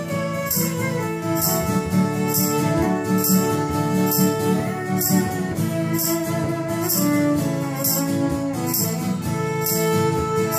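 Fiddle playing an instrumental break of a gospel tune, its melody moving in long bowed notes, over accompaniment that keeps a steady beat.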